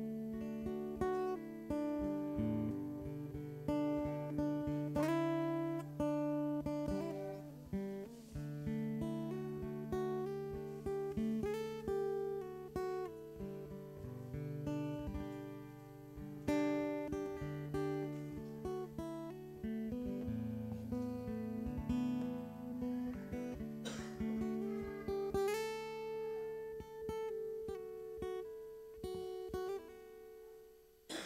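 Acoustic guitar playing worship music, a run of strummed and picked chords without singing.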